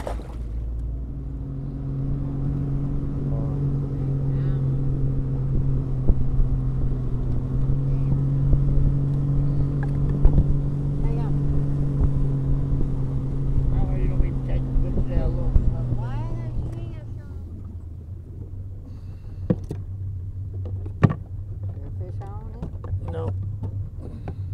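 Boat motor running steadily, then easing off to a lower, quieter hum about seventeen seconds in. Sharp clicks and knocks near the end come from the PVC tubes being handled.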